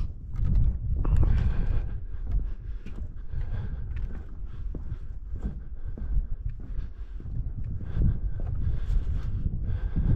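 Footsteps of a person walking on snow and boards, with wind buffeting the microphone in gusts, the strongest about a second in.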